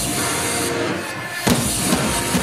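A live rock band playing, with electric guitar and one sharp drum hit about one and a half seconds in.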